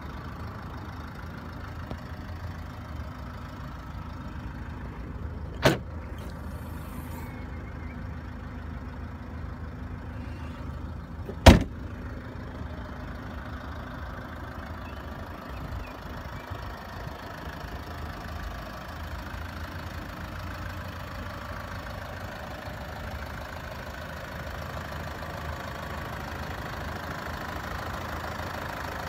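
2010 Land Rover Freelander 2 SD4's 2.2-litre four-cylinder diesel engine idling steadily. Two sharp knocks come about six seconds in and about eleven and a half seconds in, and the second is the loudest sound.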